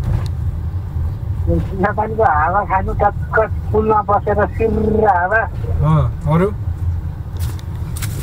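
Steady low rumble of a car's engine and tyres heard from inside the cabin while driving, with voices talking over it for much of the time.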